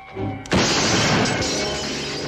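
A gunshot through a television screen: a sudden crash about half a second in as the TV's glass screen shatters, then breaking glass that trails off, over film score.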